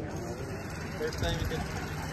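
Indistinct conversation between people close by, over a steady low rumble.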